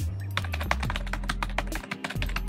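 Typing on a computer keyboard: a quick, steady run of keystrokes, over background music.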